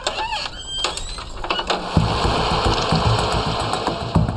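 A Border Patrol truck's rear compartment door being handled, with a few short squeaks in the first second. From about two seconds in comes the rumble of the truck's engine running as it pulls away.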